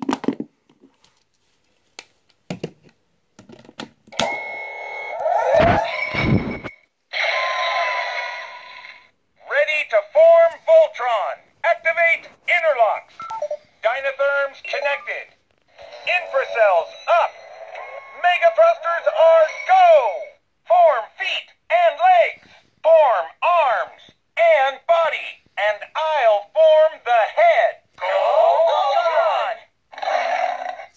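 Classic Legendary Voltron toy's built-in speaker playing its formation sequence, set off as the Green Lion's peg is clicked into the shoulder socket. A few sharp clicks of plastic handling come first, then electronic sound effects, then recorded voice lines from the 1984 show. The voice sounds thin, with no bass, as from a small toy speaker.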